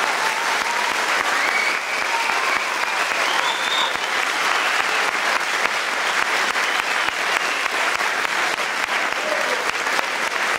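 Audience applauding after a piece, a steady dense clapping throughout, with a few voices calling out within it.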